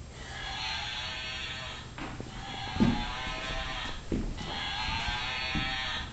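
Battery-operated plush toy, set off by squeezing its head, giving out a tinny electronic sound in three phrases of about two seconds each with short breaks between them. A few soft knocks from handling fall in the gaps.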